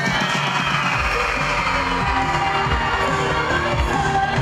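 Upbeat pop music playing loudly over a cheering, clapping crowd of schoolchildren and adults; the music's bass beat comes in about a second in.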